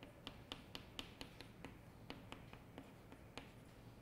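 Chalk on a chalkboard, writing in capital letters: a faint run of sharp taps and short scrapes, about four a second at first, then a few more spaced out.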